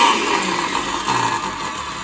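Hannover 4-in-1 food processor motor spinning the empty glass chopper bowl on the pulse setting. Its whine drops in pitch near the start, then the motor noise runs on, gradually getting quieter.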